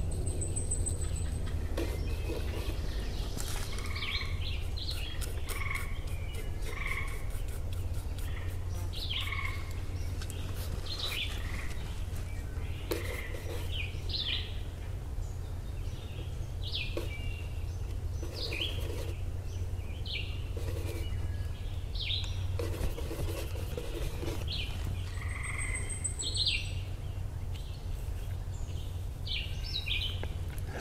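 Woodland birds calling in short chirps and whistles, with a frog calling close by. A steady low hum runs underneath.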